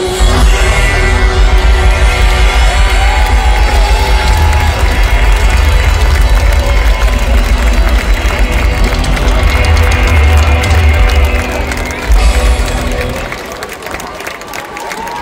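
Live band playing a loud passage with heavy bass over a cheering crowd. The music stops about a second before the end, leaving the crowd cheering.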